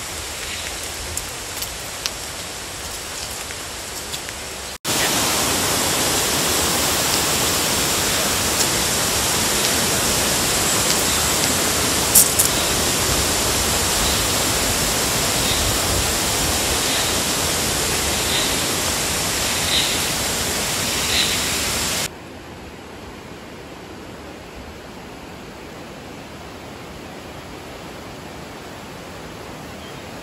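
Steady rushing noise of flowing water, like a stream. It jumps abruptly louder about five seconds in and drops back just as abruptly at about 22 seconds. During the loud stretch a faint high chirp repeats every second or so.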